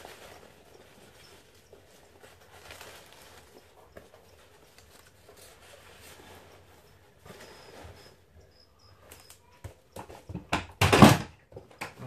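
Paper and packaging rustling softly as a parcel is unwrapped. Near the end come a few knocks and then a loud clatter as packing and items fall to the floor.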